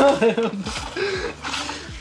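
Several men laughing, loudest at the start and again about a second in.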